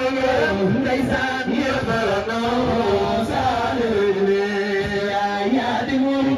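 Religious chanting of the kind sung at a Senegalese Gamou, voices drawing out long, slowly wavering notes without a break.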